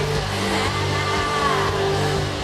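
Live rock band playing through a festival PA, heard from within the crowd: sustained chords with a high tone that slides up and back down about halfway through.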